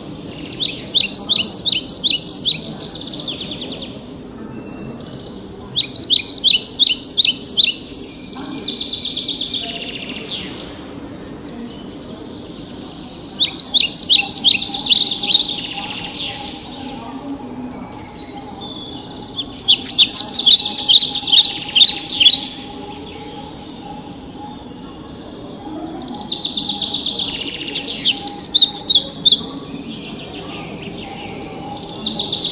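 Recorded bird song from a forest diorama's nature soundscape: five bursts of rapid, high, repeated notes, each lasting two to three seconds and coming every six or seven seconds, with softer calls between them over a low steady hum.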